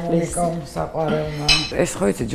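Kitchen crockery and a metal cup being handled, with a sharp clink about one and a half seconds in, under a woman's talking.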